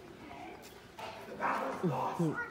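A person's voice: after a quiet first second, a loud cry rings out, followed near the end by two short rising yelps that sound like barking.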